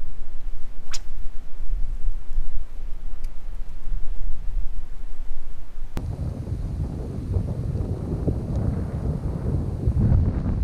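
Wind buffeting the camera microphone, a heavy low rumble. About six seconds in it shifts abruptly to a rougher, breathier rush of wind noise.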